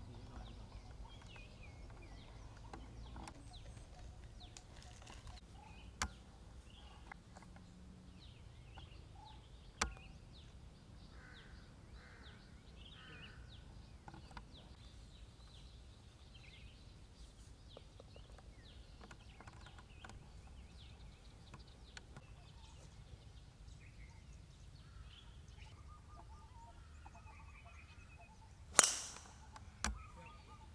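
Quiet outdoor golf-course ambience with birds calling throughout, broken by two small sharp clicks. Near the end comes one loud, sharp crack of a club striking a golf ball off the tee.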